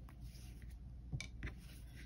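Faint rubbing of yarn as two yarn ends are tied and pulled into a knot by hand, with a couple of soft ticks a little past the middle, over a low steady hum.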